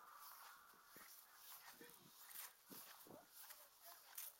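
Near silence: faint outdoor ambience, with a few faint short calls about halfway through and near the end.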